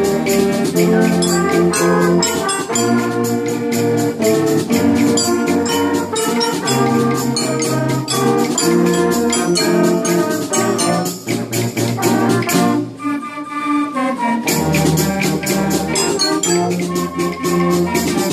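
Middle-school concert band playing, with trumpets and trombones carrying held chords over a steady percussion beat. The low parts drop out briefly about thirteen seconds in.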